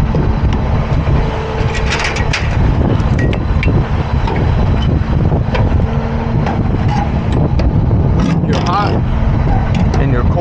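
Semi truck's diesel engine idling steadily, with sharp metallic clicks and clanks as the trailer's air-line gladhands and electrical cord are handled and coupled, clustered around two seconds in and again near nine seconds.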